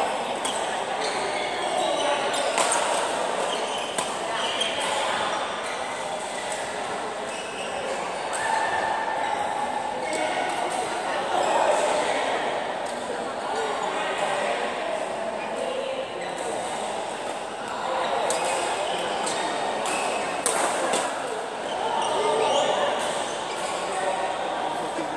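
Badminton rackets hitting a shuttlecock in sharp clicks at irregular intervals, over continuous background voices echoing in a large indoor hall.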